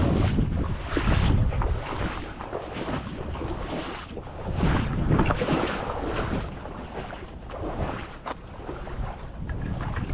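Wind buffeting the microphone: a rushing noise, heaviest in the low end, that swells and eases in gusts. There are a couple of brief clicks, about three and a half seconds in and near eight seconds.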